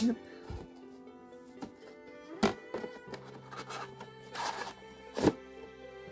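Soft background music with steady held notes, under the handling of sealed foil trading-card packs on a desk mat: a few sharp knocks, the loudest just after five seconds in, and a brief rustle of the wrappers.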